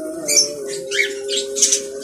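Budgerigars chirping in scattered short, high calls, over a steady held low tone.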